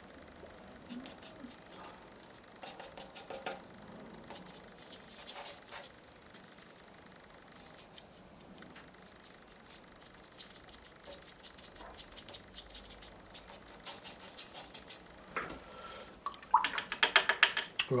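Faint, irregular small clicks and light scratches of watercolour painting work: a brush on paper and on the palette. A man's voice starts speaking near the end.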